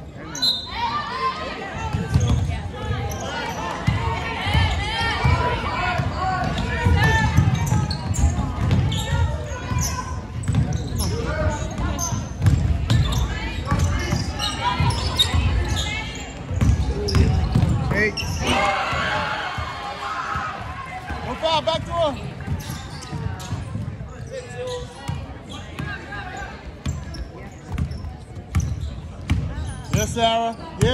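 Basketball being dribbled on a hardwood gym floor during play, repeated low thuds, under spectators' voices and shouts that echo through the gym.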